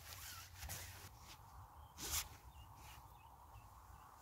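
Quiet rustling and scraping of tarp fabric and clothing as a stick pole is set against the underside of a tarp, with one louder brush of fabric about two seconds in.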